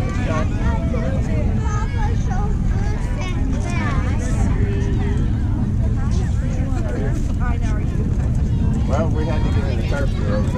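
Several voices of spectators and players at a youth ball game, talking and calling out across the field, with louder calls about four seconds in and near the end, over a steady low rumble.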